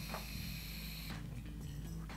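Air being pulled through a Sikary Dicey Saint sub-ohm tank as its coil fires during a draw: a steady high hiss that stops about a second in.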